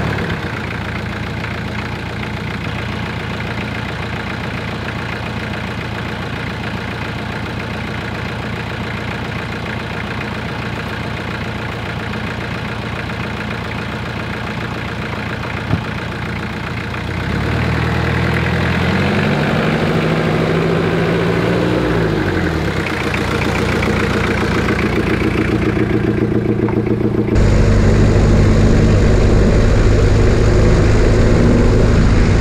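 Jeep Cherokee XJ's diesel engine idling steadily. About halfway through its note rises and wavers as the Jeep pulls away, then settles. Near the end the sound cuts to a louder, steady drone of the engine and running gear heard from under the moving vehicle.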